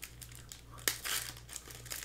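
Foil wrapper of a Donruss Optic basketball card pack crinkling in the hands, a run of irregular crackles with one sharper click a little under a second in.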